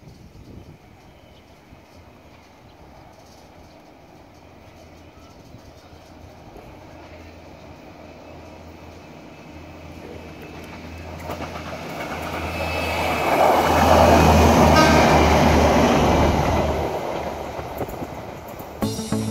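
Diesel railcar train approaching along the track and drawing close. Its engine drone and wheel rumble grow steadily louder, are loudest about fourteen to sixteen seconds in, then ease a little.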